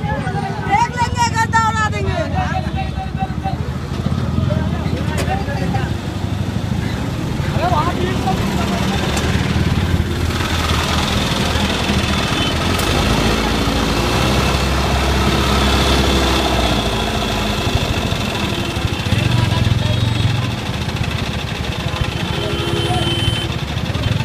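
Diesel engine of a mobile crane running steadily, with a crowd of people talking around it.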